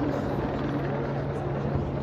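Police helicopter flying overhead: a steady low rotor and engine drone.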